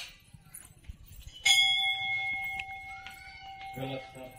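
A temple bell struck once about a second and a half in, ringing on with a long, slowly fading tone.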